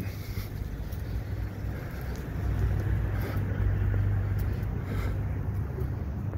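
City street traffic: a steady low engine hum from cars on the street, growing somewhat louder through the middle of the stretch.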